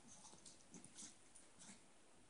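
Very faint sounds from small dogs moving about: a few short, soft noises scattered through near quiet.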